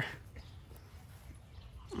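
A quiet lull of faint outdoor background noise, ended by a short hummed "mm" from a voice.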